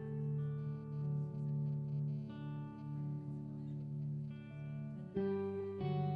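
Electric guitars playing a slow instrumental passage of a live rock song, long held notes ringing over a steady low note, with a louder chord struck about five seconds in.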